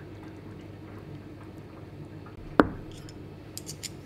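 Light wet handling of pickled pieces in a plastic tub of vinegar marinade, then a single knock about two-thirds of the way in as a ceramic bowl is set down on the cutting board, followed by a few light clicks.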